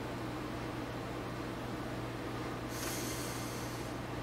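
Steady low electrical hum over a faint hiss of room noise, with a short, sharp sniff of breath through the nose near the end.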